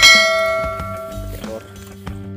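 A single bright bell chime, struck once at the start and ringing out for about a second and a half: the notification-bell sound effect of a subscribe-button animation, over background music.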